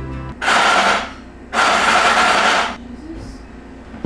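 Apartment intercom door buzzer sounding twice, a short harsh buzz and then a longer one, signalling a delivery at the door.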